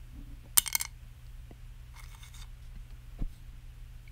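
A small ukulele saddle clattering against a perforated board: a quick run of sharp clicks with a bright ring about half a second in, then fainter clicks and a low knock near the end. Each material's click and ring is being listened to as a test of how the saddle sounds.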